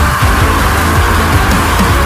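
Loud, aggressive rap beat with repeated deep, downward-sliding bass hits and dense backing, and no rapped vocals.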